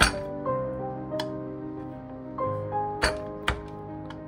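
Background music of sustained, stepping piano-like notes, over which a kitchen knife cuts tomatoes on a wooden cutting board with a few sharp strokes: one at the start, one about a second in, and two close together about three seconds in.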